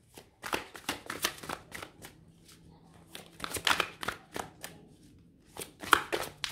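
A thick deck of oracle cards being shuffled by hand, the cards clicking and slapping against each other in uneven bursts with short pauses between.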